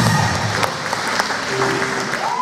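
Audience applauding with scattered cheering as the live band's final notes die away within the first half second.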